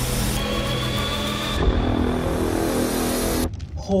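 Trailer soundtrack: dramatic score under a dense, noisy sound effect, which cuts off abruptly about three and a half seconds in. A voice starts an exclamation right at the end.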